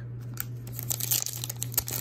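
Foil wrapper of a sealed Topps Allen & Ginter baseball card pack crinkling and crackling as it is picked up and handled, the crackles getting denser and louder about a second in.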